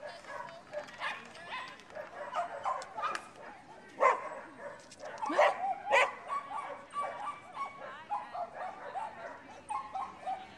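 A dog barking and yipping over and over in short calls, the loudest about four and six seconds in, with voices in the background.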